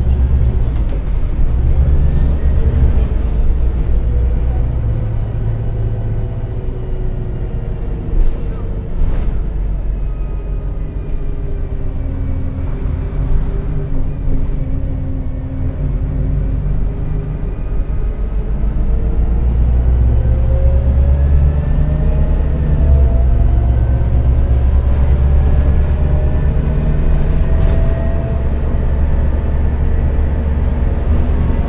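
A Renault Citybus 12M city bus under way, heard from inside the passenger cabin: a steady low engine and road rumble with a faint whine that falls in pitch in the middle and rises again in the second half as the bus changes speed.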